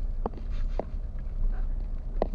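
Steady low rumble of a car's engine and tyres heard inside the cabin while driving slowly on a rough concrete road, with two short knocks, about a quarter second and just under a second in.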